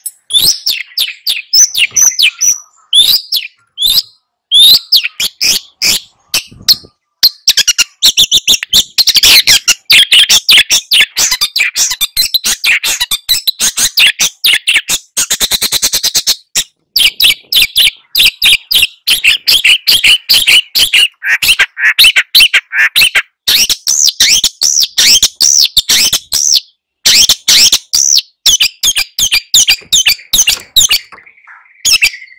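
Long-tailed shrike (cendet) singing loudly: a fast, almost unbroken run of sharp chattering notes, with a very rapid trill about halfway through.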